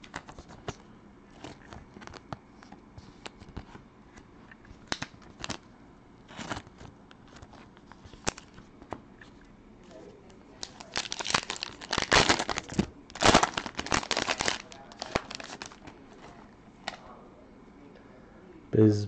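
Trading cards being handled with scattered light clicks and slides, then a foil pack of Panini Prizm basketball cards crinkling and tearing as it is ripped open, loudest from about eleven to fifteen seconds in.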